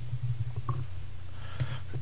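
A pause between speech on a podcast recording, filled by a low steady hum with a faint click and a soft faint noise.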